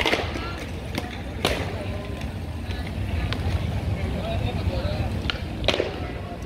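Inline skate wheels rolling over stone paving with a steady low rumble, and a few sharp clicks and knocks, the loudest at the start and near the end.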